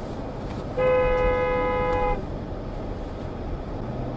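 Car horn sounding one steady honk of about a second and a half, a warning at a car pulling out in front, over the low rumble of road noise.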